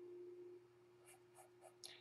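Near silence: room tone with a faint steady hum and a few faint ticks in the second half.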